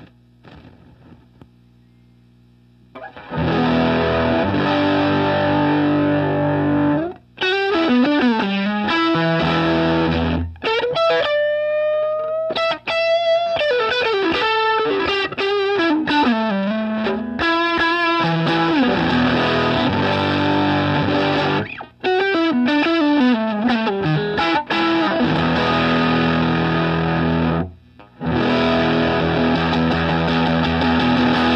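Electric guitar played through a ZVEX Box of Rock distortion pedal: ringing distorted chords with short breaks, and a single-note lead line with bent notes in the middle. It comes in about three seconds in, after a few faint clicks.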